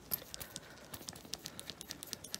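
Stir stick clicking and scraping against the inside of a small jar of Marabu Easy Marble paint as the paint is stirred: a fast, irregular run of faint ticks.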